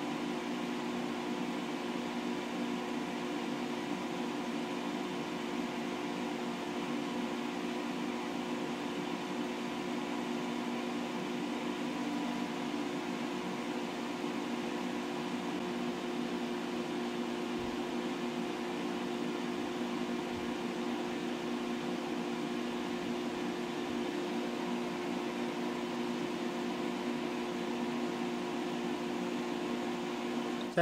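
Hobby spray booth's extraction fan running steadily: an even motor hum with a steady rush of air.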